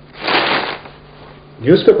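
A short rustle of a newspaper being handled, about half a second long; a man starts speaking near the end.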